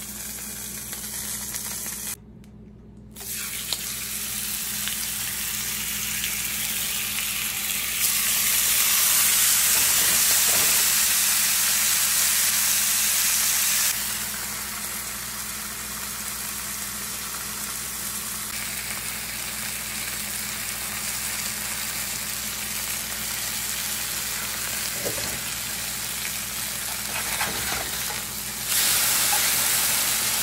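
Thin-sliced ribeye frying in oil in a cast-iron skillet, a steady sizzle. It grows louder for several seconds about a third of the way in and again near the end, when the steaks are turned with a spatula.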